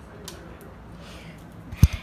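Faint room noise, then a single short, sharp thump near the end.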